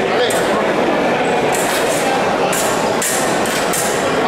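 Fencing blades clinking against each other in short metallic strikes, about five or six times, some in quick pairs, during a wheelchair fencing bout, over the murmur of a crowd.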